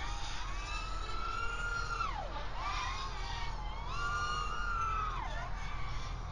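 Brushless motors of an FPV racing quadcopter whining in flight, several pitches climbing and holding, then dropping sharply twice as the throttle is cut, about two seconds in and again near the end, over a low steady hum.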